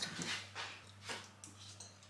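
Faint sounds of two people eating from bowls: a few soft scrapes of cutlery and mouth and breath noises, over a steady low electrical hum.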